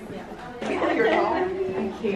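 Indistinct chatter of several women's voices talking over one another in a large room, louder from about half a second in.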